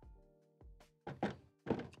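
Soft background music with a few dull, low thunks as a painted 3D-printed plastic hammer prop is handled and knocked against the desk.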